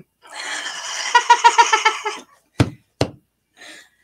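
Laughter: a run of high-pitched, pulsing laughs lasting about two seconds. It is followed past the middle by two sharp knocks about half a second apart.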